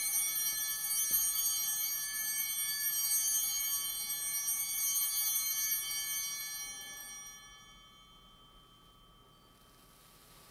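An altar bell, struck once just before, rings on with many clear high tones and slowly fades away, dying out about eight seconds in. It marks the elevation of the consecrated host.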